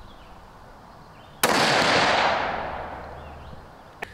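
A single rifle shot from a Tikka UPR in 6.5 Creedmoor about a second and a half in, its report fading away in a long echo over about two seconds.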